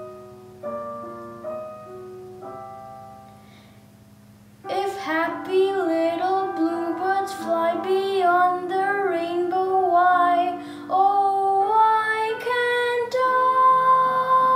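Slow piano accompaniment, then a boy's voice comes in singing about a third of the way through, holding long, wavering notes over the piano.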